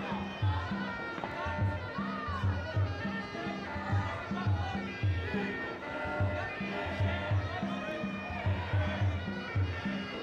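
Traditional Muay Thai fight music (sarama) played ringside during the bout: a wavering, reedy pipe melody over a steady drum beat of a little under two beats a second.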